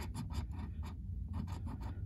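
A metal coin-shaped scratcher scraping the latex coating off a lottery scratch-off ticket in quick repeated strokes, over a low steady hum.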